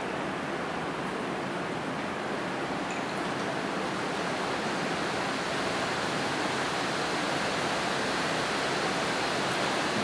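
Steady, even background hiss with no rhythm or distinct events. The quiet brushwork on paper is not picked out.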